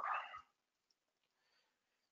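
The last half-second of a spoken word trailing off, then near silence with only faint room tone.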